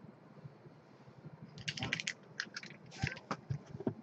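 Hands handling and opening a sealed trading-card box: quiet at first, then quick crinkling, scratching and clicking of cardboard and wrapping from about a second and a half in.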